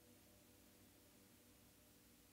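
Near silence: faint room tone during a pause in the music.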